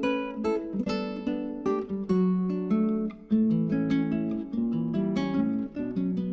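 Acoustic guitar music: a run of quick plucked notes.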